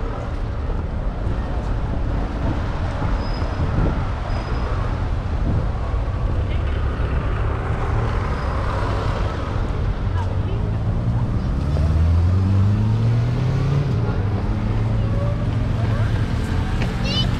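City traffic rumble on a riverside road, with a vehicle engine accelerating past about ten seconds in, its pitch rising for a couple of seconds.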